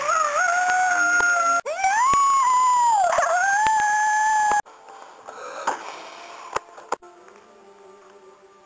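A child howling like a monster in two long, loud held cries, the second dipping in pitch in the middle. Both stop abruptly about halfway through, leaving a few faint knocks.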